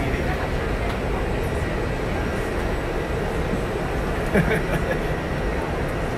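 Steady background noise inside an Airbus A380 cabin: a constant low rumble with a hiss of air over it. A short bit of voice comes a little past four seconds.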